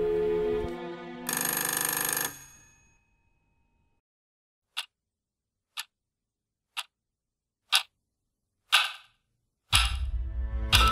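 Music fades out and a short ring sounds for about a second. After a silence a clock ticks once a second, five ticks each louder than the last, and music comes in just before the end.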